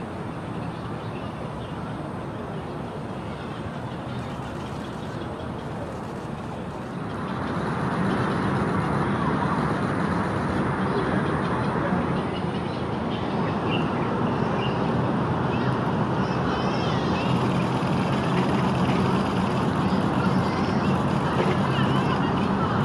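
Steady background noise like distant road traffic, growing louder about seven seconds in, with a few faint high calls over it.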